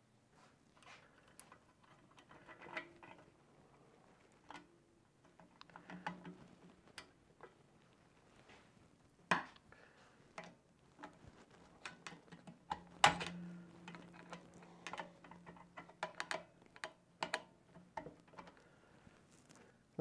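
Light metallic clicks and taps as a steel snap ring is worked into the rear servo bore of a 48RE automatic transmission's aluminium case, seating the rear servo spring retainer. The clicks come irregularly, the sharpest about thirteen seconds in.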